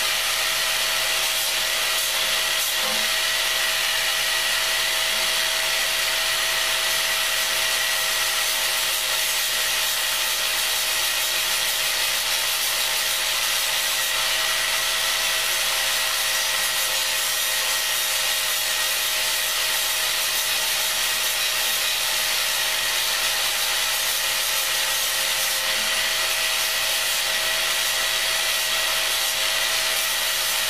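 Angle grinder running at a steady speed with a constant whine, its flap disc grinding the rough, flaky outer layer off a cattle horn with a continuous rasping hiss.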